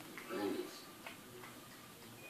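A cat lapping and chewing cottage cheese from a bowl: a run of soft, quick clicks, a few a second, with a television voice briefly behind them.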